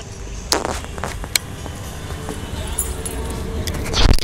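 Low steady rumble with a few sharp clicks, about half a second and a second and a half in: handling noise of a handheld camera being carried outdoors.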